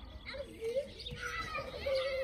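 Faint voices of young children calling and chattering at a distance, in a garden.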